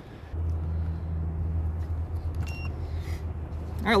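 A steady low mechanical rumble starting abruptly just after the start, with a short electronic beep about two and a half seconds in.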